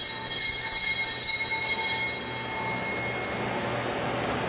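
Altar bells rung at the elevation of the consecrated chalice. The bright, high ringing stops being struck about two and a half seconds in and dies away.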